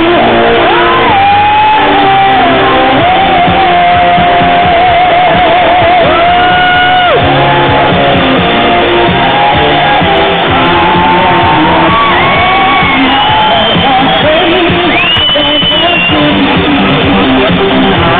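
A singer performing live over loud amplified music in a large hall, holding long notes, one of them with a wide vibrato about four seconds in. Picked up on a phone's microphone, the sound is loud and dull, with no treble.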